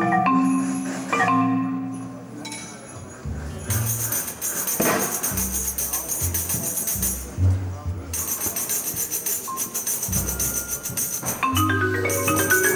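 Orchestral percussion music: a marimba plays a quick melodic figure for the first two seconds. About four seconds in, tambourine jingles take over above low bass notes, pausing briefly, and the marimba figure returns near the end.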